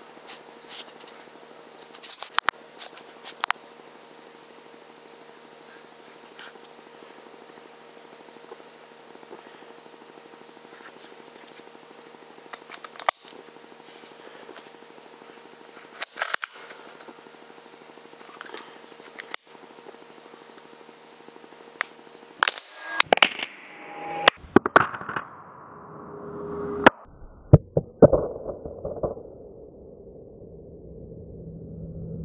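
Faint steady electronic hum with a few scattered clicks, then, about three-quarters of the way through, a .22 Hatsan Blitz PCP air rifle's shot and its strike replayed in slow motion: several sharp reports, drawn out and lowered in pitch, the loudest near the end.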